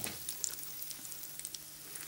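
Breadcrumb-coated stuffed eggs frying in hot oil in a pan: a quiet, steady sizzle with faint crackles.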